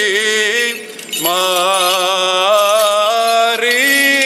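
A male Greek Orthodox cleric chants solo in Byzantine style, one long ornamented melodic line. There is a short break for breath about a second in, and then the line carries on.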